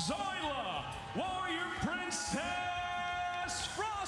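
A loud, drawn-out voice, with long held notes and rising and falling glides, over background music.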